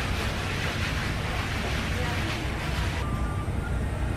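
Steady restaurant room noise: a low hum under a wash of indistinct background chatter.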